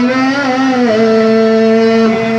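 A man singing a Malayalam madh song into a handheld microphone, holding long notes with a short melodic turn, stepping down in pitch a little under a second in.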